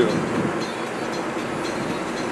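Steady rush of wind and tyre noise inside an open-top convertible car driving along a road.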